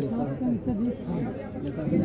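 People talking in Hindi, overlapping chatter at a market stall; speech only.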